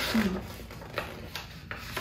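Paper pages of a large picture book rustling and rubbing as they are handled and turned, in several soft short strokes.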